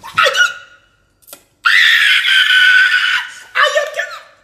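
A woman screams: one long, high-pitched scream of about a second and a half, starting a little over a second and a half in, after a short exclamation at the start. It is a reaction to tasting the pepper soup.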